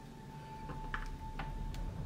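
A few faint, light ticks around the middle, over a faint steady held tone.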